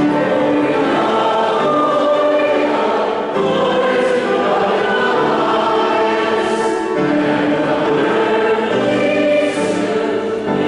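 Choir singing sacred music in held, sustained notes, with brief breaks between phrases about three and seven seconds in.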